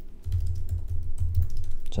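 Typing on a computer keyboard: a quick run of keystrokes over a low, steady rumble.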